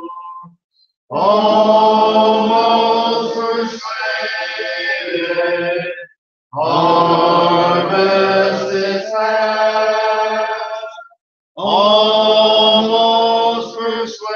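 Congregation singing a hymn unaccompanied, in three long sung phrases with brief pauses for breath between them.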